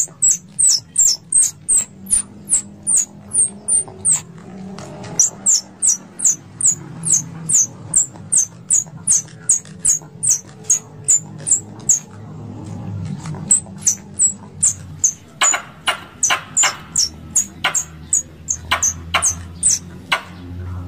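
Plantain squirrel calling: a long run of sharp, high chips, each falling in pitch, about two to three a second. A few louder, fuller chips come near the end.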